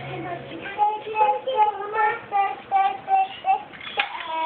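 A young child singing a simple tune in short, high, evenly paced notes.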